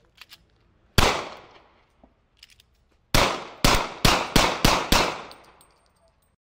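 Gunshots with echoing tails: a single shot about a second in, a few faint clicks, then a quick string of about half a dozen shots, roughly three a second, starting about three seconds in.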